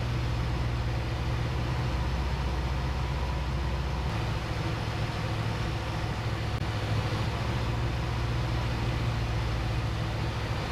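Jodel DR1050 light aircraft's engine running steadily, heard inside the closed cockpit on final approach. Its low note changes slightly about four seconds in.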